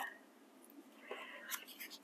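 A quiet pause: a faint breath and soft handling of sticker-book paper pages, with a couple of light ticks near the end.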